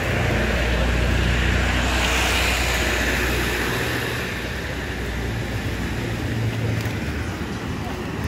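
Street traffic: a low vehicle engine rumble for the first half, fading out about four seconds in, with a rush of tyre noise that swells and fades about two to three seconds in as a vehicle passes.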